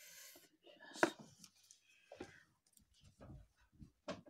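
Hands handling small craft items and a glue tube on a tabletop: a sharp click about a second in, then light taps and rustles.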